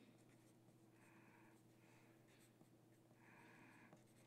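Faint scratching of a pencil writing on paper, in a few short strokes, over a steady low hum.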